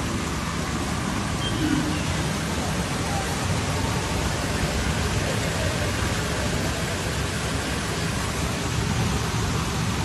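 Muddy floodwater rushing through a street in heavy rain, a steady, unbroken rush of noise.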